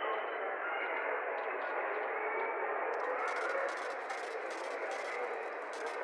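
Muffled mall field recording: a steady crowd murmur cut off below and above. From about three seconds in, it is layered with the clicks and clatter of a cash register sound effect.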